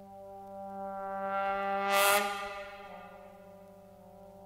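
Jazz big band's brass section holding a sustained chord that swells to a loud peak about two seconds in, topped by a brief crash of percussion. The chord then falls back to a softer held tone.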